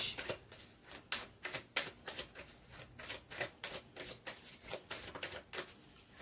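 A deck of oracle cards being shuffled by hand: a quick, irregular run of light card clicks and flicks.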